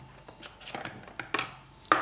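A few light clicks and knocks of cardboard packaging being handled: a phone's accessory box is opened and the charger lifted out.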